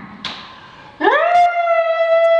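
A woman's excited scream: starting about a second in, it rises in pitch and then holds one steady, loud note.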